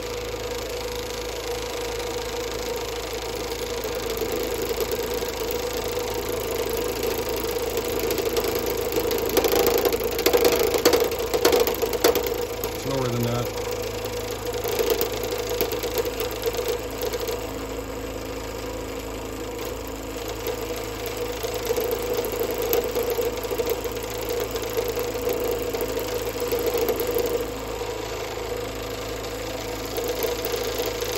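Wood lathe running with a steady hum while the motorised cutting head of a Sorby RS-3000 ornamental turning device is advanced into the spinning dry wood, cutting a decorative pattern. The cutting gets louder and rougher about a third of the way in, then settles back.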